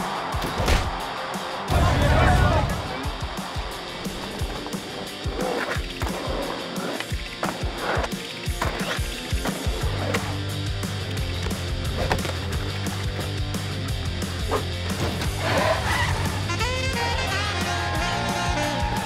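Cartoon sound effects over music: a heavy thump about two seconds in, then skateboard wheels rolling down a ramp as a steady low rumble from about the middle on, with band music coming in near the end.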